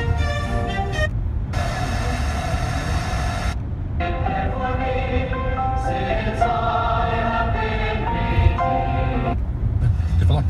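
Car FM radio being stepped up the dial. Music cuts off about a second in, and after a brief mute a couple of seconds of music come through with a hiss. A second mute leads into several seconds of music with held notes, which drops out again just before the end.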